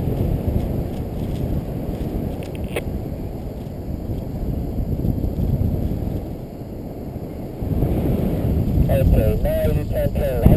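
Wind from flight rushing over the microphone of a camera worn by a paraglider in the air, a steady low rush that eases a little after about six seconds and picks up again near eight seconds.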